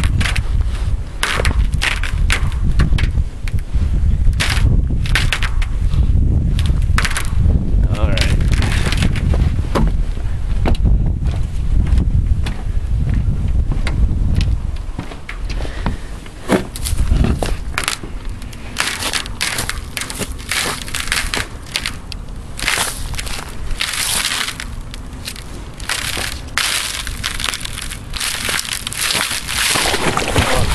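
Footsteps crunching on frozen pond ice and then through dry grass and reeds at the edge, with many short crackling crunches. A low rumble lies under the first half, and the crunching turns denser and sharper in the second half.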